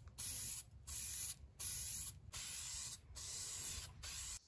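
Aerosol can of filler primer sprayed in five short bursts of hiss, each under a second long, with brief gaps between them.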